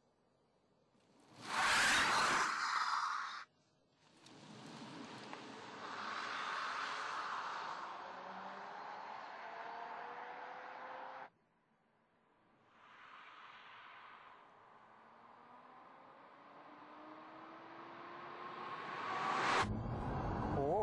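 Mercedes-Benz SLS AMG E-Cell on the move under its four electric drive units: tyre and wind noise with a faint whine that climbs in pitch as the car accelerates. There is a loud rushing whoosh about two seconds in, and the sound cuts off suddenly twice, with separate stretches of driving noise between.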